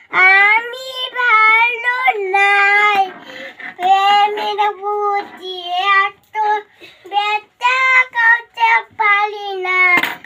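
A young child singing in a high voice, holding long notes of a tune with short breaks between phrases.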